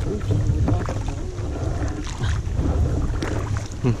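Wind rumbling on the microphone of a kayak-mounted camera, with water lapping and splashing around the kayak on open lake water.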